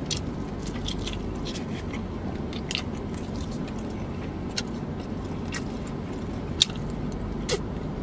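Close-up mukbang eating sounds of a man biting and chewing barbecue pork ribs: scattered wet mouth clicks and smacks, the sharpest near the end, over a steady low hum.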